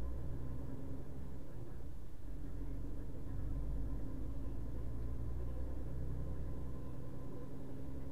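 Low, steady engine and road rumble from a moving vehicle on a wet road, heard from inside the cab.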